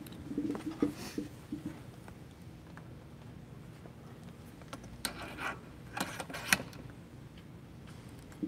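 Handling noises of a MōVI Controller being set onto its mount on a MōVI Wheels rig: scattered clicks and knocks, with a cluster about five seconds in and the sharpest click about six and a half seconds in.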